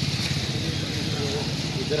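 Several men talking indistinctly at once over a steady low hum.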